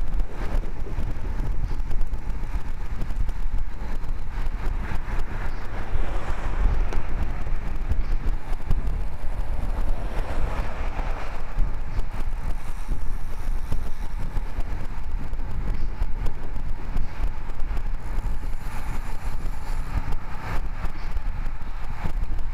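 Steady wind rush and low buffeting on a bike-mounted camera's microphone as a road bike rides at speed in a group. A passing motor vehicle swells up and fades about halfway through.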